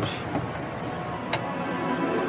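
Background music from a TV drama's score, with a sharp tick about two-thirds of the way through.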